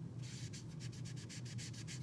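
Soft pastel chalk rubbed onto cardstock with a sponge applicator, a faint dry scrubbing in quick repeated strokes, several a second, starting about half a second in.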